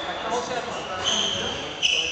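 Sports shoes squeaking on the wooden squash court floor as a player turns: a high squeak about a second in and a second, sharper squeak near the end.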